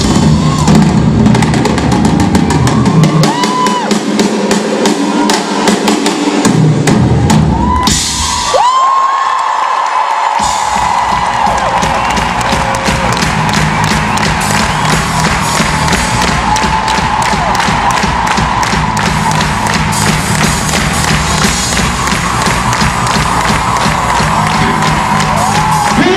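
A rock drum kit played live and loud through an arena PA, with rapid snare and cymbal hits over bass drum. The deep bass drops out twice for a few seconds, about three and eight seconds in.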